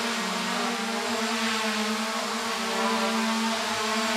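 SJRC F11S Pro 4K quadcopter's brushless motors and propellers buzzing steadily in flight, the pitch wavering slightly as it is steered left, right and back in sport mode.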